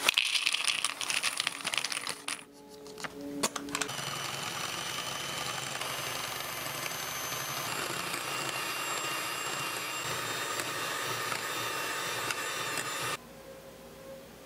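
Foil cracker packet crinkling as crackers tumble into a wooden bowl, then an electric hand mixer running steadily for about nine seconds, whipping egg whites and sugar into meringue, cutting off suddenly near the end.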